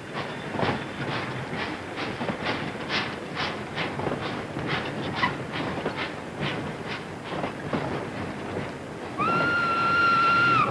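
Steam locomotive running with a freight train, its chuffs coming about two to three a second. About nine seconds in, a steady whistle note starts.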